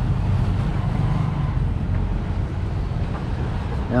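A motor vehicle engine running steadily: a low, even rumble with no change in speed.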